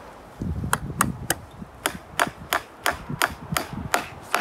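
Hammer blows driving a nail through a wooden birdhouse into a tree trunk: about ten sharp, evenly paced strikes, roughly three a second, beginning just under a second in.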